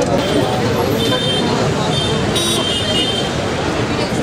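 Crowd of people talking over one another, with road traffic running in the background and a few short high-pitched tones.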